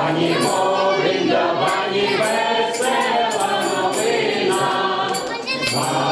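A small group of women's voices and a man's voice singing a Slavic carol (koliadka) together, with a hand tambourine's jingles shaken along in a regular beat.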